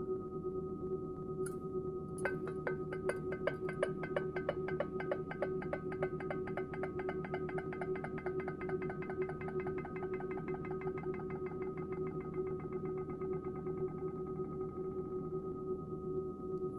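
Instrumental music: a steady sustained drone, joined about two seconds in by a rapid run of short, repeated ticking notes that gradually fade away.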